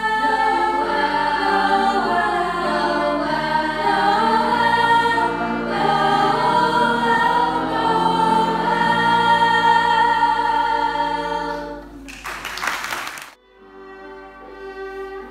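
Girls' choir singing a Christmas carol, many voices together. Near the end the singing stops and a brief burst of noise follows.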